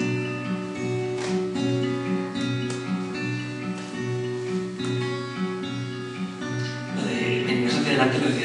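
Acoustic guitar playing a song's introduction: picked and strummed chords over a steady, repeating pattern of low bass notes, growing fuller and louder near the end.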